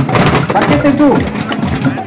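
A group of children beating drums with plastic sticks: a dense, uneven clatter of many strokes, with a voice calling out over it.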